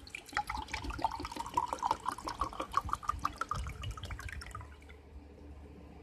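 Coffee poured in a stream into a ceramic mug, splashing, with a pitch that rises as the mug fills. The pour stops after about four and a half seconds.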